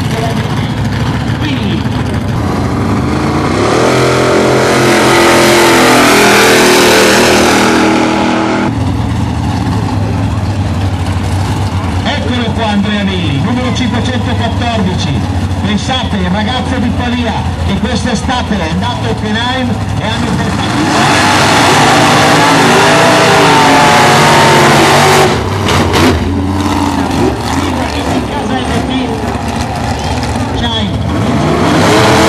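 Drag-racing muscle car engines revving hard twice, each a long loud run of rising pitch that cuts off suddenly, with the engines rumbling at lower revs between the two runs.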